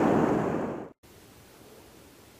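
Rushing river current with wind buffeting the microphone, cutting off abruptly about a second in; after that only a faint steady hiss.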